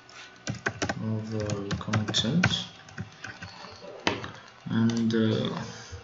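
Typing on a computer keyboard: a quick run of keystrokes within the first second and more around two seconds in, then a single sharp click about four seconds in. A low voice can be heard between the keystrokes.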